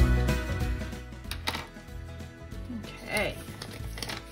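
Light guitar background music that drops much quieter about a second in, with a few sharp clicks and light rustles from a felt-tip pen and paper being handled.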